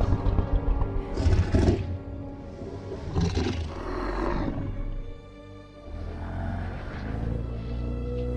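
Orchestral film score with sustained notes, over which the giant ape Kong gives three or four deep, breathy rumbles in the first half, the loudest about a second in. After that the music carries on alone.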